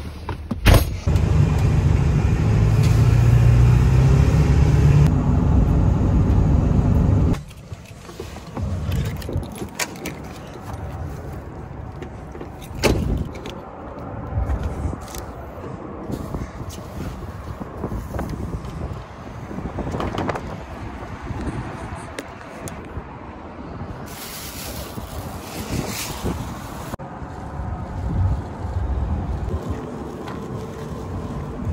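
Pickup truck running, heard from inside the cab as a loud, steady low rumble that cuts off suddenly after about seven seconds. Then quieter scattered knocks and clicks of handling, with wind on the microphone.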